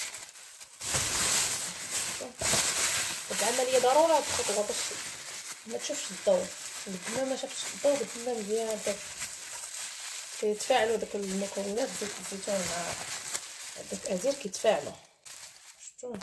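Thin plastic bag crinkling as it is handled over the mouth of a pot, with a woman's talking over much of it.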